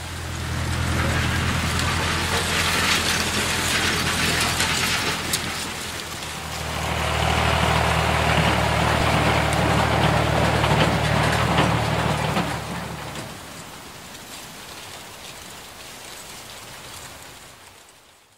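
A steady low machine hum under a loud rushing hiss. It swells twice, then drops back and fades out near the end.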